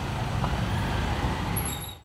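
Steady low rumble of a car engine and street traffic, fading out near the end.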